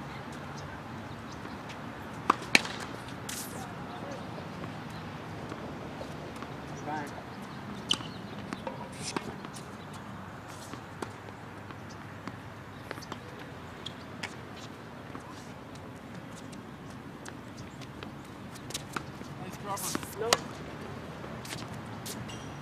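Tennis balls being struck and bounced on hard courts: scattered sharp pops, the loudest pair about two and a half seconds in and another cluster near the end, over faint distant voices.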